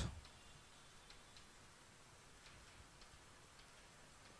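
Near silence with a few faint, irregular light ticks of chalk tapping and scraping on a blackboard as words are written.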